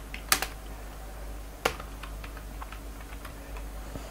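Computer keyboard being typed on: irregular key clicks, two of them louder, about a third of a second and a second and a half in, over a steady low hum.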